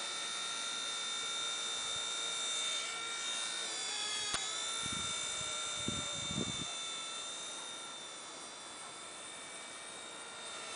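Blade mCP X V2 micro RC helicopter flying: a steady high motor and rotor whine with several tones, dipping briefly in pitch about four seconds in and then recovering. A single sharp click about four seconds in comes from the hat-mounted camera's lens.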